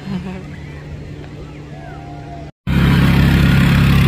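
Faint voices in open air, then an abrupt cut about two and a half seconds in to a much louder steady low hum, like a motor vehicle engine idling.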